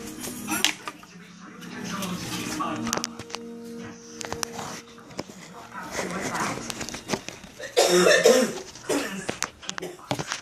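Film or television audio playing in a small room: dialogue over held music tones, with a loud vocal burst about eight seconds in.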